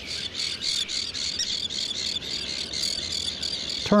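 Terns calling in a breeding colony: a steady stream of high, rapid chirping calls, several a second, with no single call standing out.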